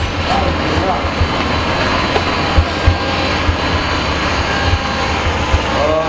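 Steady running noise of CNC workshop machinery, a continuous mechanical hum and hiss, with a few short low knocks.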